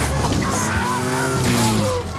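Motorcycle engines revving, their pitch gliding up and down, over tyre-skid noise as a sidecar motorcycle crashes.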